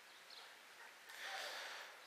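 A man's faint breath drawn in, lasting a little under a second, about a second in.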